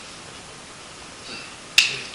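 A steady room hiss, then a single sharp click near the end.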